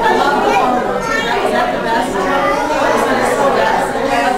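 Chatter of many people talking at once in a large room, overlapping voices with no single speaker standing out.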